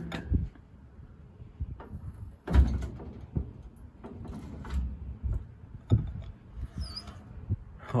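Scattered knocks and creaks, the loudest about two and a half seconds in, as a hydraulic engine hoist lowers a truck cab onto a wooden cart.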